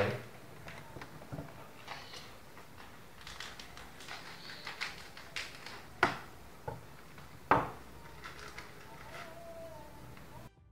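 Handling a plastic-wrapped wafer snack and a knife on a wooden table: light rustling and small clicks throughout, with two sharp knocks about six seconds in and again a second and a half later.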